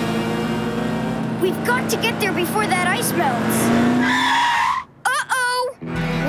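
Cartoon tire screech about four seconds in as the vehicles brake to a stop behind traffic, after background music with short wavering calls over it. The music then cuts out and a brief wavering cry follows.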